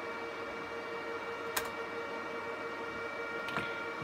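HP ProLiant ML350p Gen8 server running with its cooling fans giving a steady whir and a constant whine. A single sharp click comes about one and a half seconds in, and a fainter one near the end.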